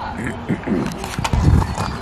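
People talking nearby, with a loud low thump on the microphone about one and a half seconds in.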